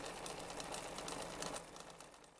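Sound effect of a sewing machine running: a fast, even stitching clatter that fades away near the end.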